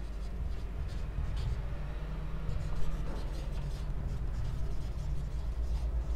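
Marker pen writing on a whiteboard: a string of short scratchy strokes over a steady low background hum.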